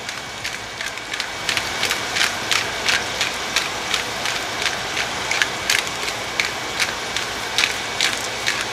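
Pork spare ribs sizzling in hot oil in a stainless steel pot as they sear, a steady sizzle broken by irregular crackles and pops, a few each second.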